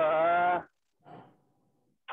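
A man's voice holding a drawn-out hesitation vowel, an "uh", for under a second, then a pause; the sound is thin, as through a video call.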